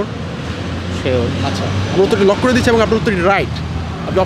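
A man talking, unrecognised speech, over a steady low rumble of road traffic that swells about a second in.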